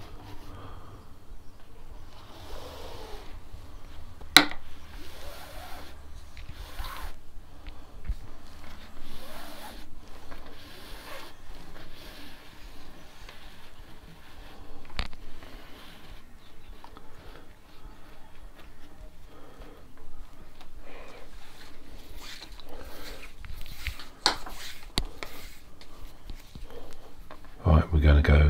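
Nylon paracord being pulled through the loops of a knotwork mat, making soft, irregular rasping swishes. Two sharp clicks, about 4 seconds and 15 seconds in, are the loudest sounds.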